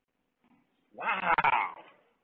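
A dog gives one call lasting just under a second, starting about a second in, picked up by a doorbell camera's microphone.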